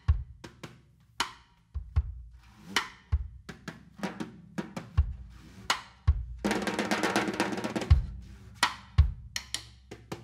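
Drum kit played mostly with the hands on the snare head, a stick held in one hand: quick taps and slaps on the snare over low bass-drum thumps about once a second. A little past halfway comes a dense, continuous rolling stretch of about a second and a half.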